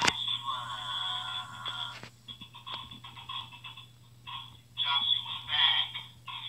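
A sung or rapped vocal track played back tinny through a small speaker, coming in short phrases with a pause in the middle, most likely the show's theme song. A sharp click comes right at the start, over a steady low hum.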